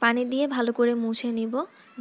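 Speech only: a woman speaking.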